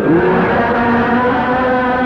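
Menzuma chanting: a voice slides up into a long held note, with other voices underneath.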